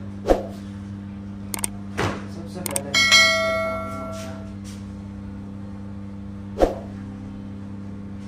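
An edited-in subscribe-button sound effect: a few clicks, then a bright bell-like ding about three seconds in that rings out over a second or so. A steady low hum runs underneath, with sharp knocks near the start and near the end.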